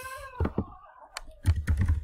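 Typing on a computer keyboard: a quick run of key clicks that come closer together in the second half.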